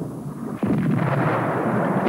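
Artillery fire: a sudden loud blast about half a second in, then a continuing rumble of firing and explosions.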